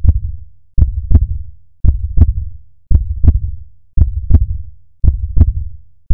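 Heartbeat sound effect: a steady lub-dub of paired deep thumps, about one beat a second.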